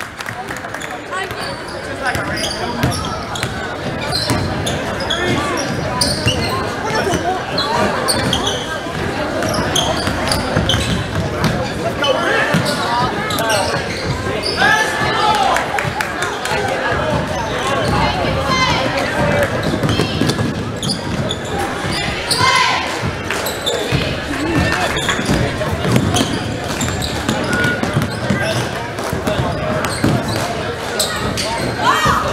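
Basketball being dribbled and bouncing on a hardwood gym floor during live play, with shouting voices of players, coaches and spectators echoing in the gymnasium.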